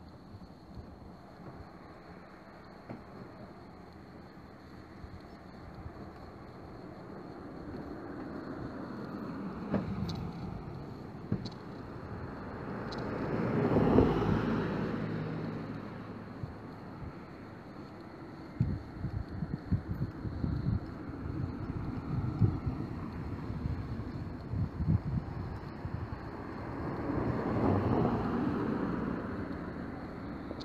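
Street traffic: a car passes, swelling and fading about halfway through, and another passes near the end. In between, irregular crackling of wind on the microphone.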